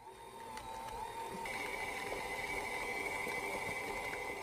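Electric stand mixer running, its beater whipping mashed potato in a stainless steel bowl: a steady motor whine that builds over the first second, with a higher tone joining about a second and a half in.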